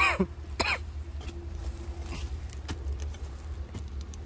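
A person coughs twice in quick succession, about half a second apart, over a steady low rumble. A few faint knocks follow, from a digging bar working dry, cracked soil.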